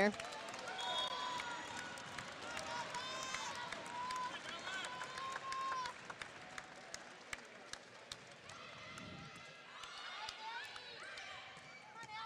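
Faint volleyball gym ambience during a rally: distant voices of players and crowd, with scattered sharp taps of the ball being played.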